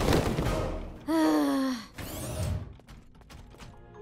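Cartoon sound effects over soft background music: a whoosh, then a short voice-like tone that falls in pitch, then a second whoosh.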